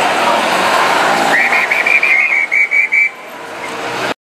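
Noise of a marching street crowd, then a whistle blown in a quick run of short blasts, about four a second, for under two seconds.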